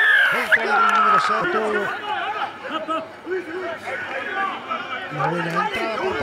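Television match commentary in Spanish, a man's voice raised and excited in the first second or so, then continuing with a murmur of other voices behind it.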